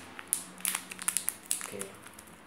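Irregular crinkles and clicks of hands handling a headphone package close to the phone's microphone, as it is being opened.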